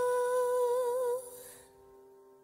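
The closing held vocal note of a pop ballad, one long steady note that wavers slightly and stops about a second in, over a softer sustained accompaniment note that fades away.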